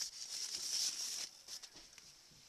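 Rustling and light handling of packaging as an item is lifted out of a box, dying away after about a second.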